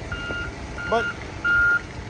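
Reversing alarm on a loader backing up: a steady, high-pitched single-tone beep repeating about every two-thirds of a second, three beeps, the last the loudest.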